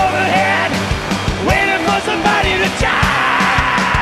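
Rock band playing an instrumental passage live: electric guitars with bending, sliding notes over steady bass and drums, with no vocals.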